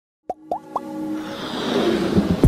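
Intro sting for an animated logo: three quick rising pops within the first second, then a swelling whoosh that builds over held synth tones.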